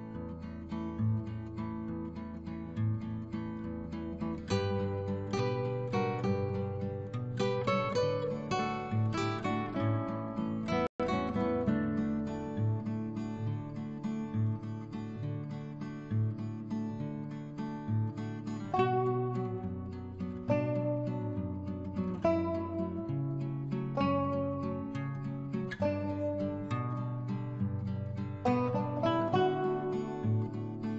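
Background music: a gentle plucked-string instrumental, like acoustic guitar, with a steady bass line. It cuts out for an instant about eleven seconds in.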